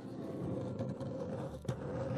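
Small wooden toy sofa being pushed along a dollhouse floor, a steady scraping drag, with one sharp knock near the end.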